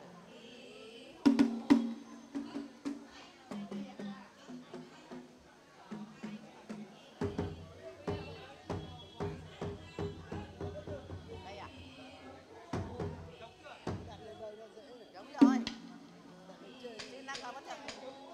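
Large red festival drum struck with a wooden stick: one hard beat about a second in, a run of quicker beats in the middle, and another hard beat near the end. It is the drum signal to deal the cards in a tổ tôm điếm game.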